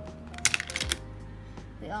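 A plastic disposable lighter set down into a compartment of a hard plastic organizer box, giving a quick clatter of clicks about half a second in.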